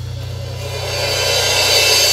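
Steady low hum from a rock band's stage amplifiers, under a bright cymbal wash that grows louder from about half a second in, building up just before a song starts.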